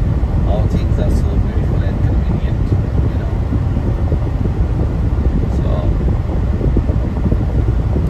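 Steady road and wind noise of a car cruising at highway speed: an even low rumble that holds level throughout.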